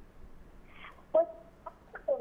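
A short pause on a telephone line, then a woman's voice over the phone making a brief hesitant sound about a second in, with a couple of small clipped noises before she starts to answer.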